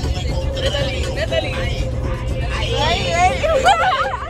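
Inside a moving bus: a steady low rumble from the road and engine under music, with excited voices that grow louder and rise into shouts near the end.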